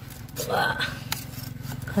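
Knife cutting through a tough cauliflower stalk: a short crunching scrape about half a second in, then a sharp click.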